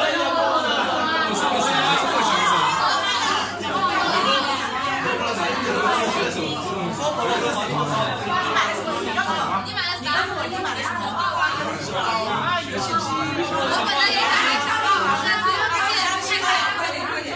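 Chatter of a group of people talking over one another in a room, steady and unbroken.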